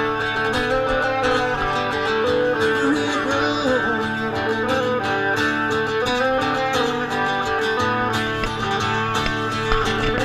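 Live band playing a country instrumental passage led by strummed and picked guitars.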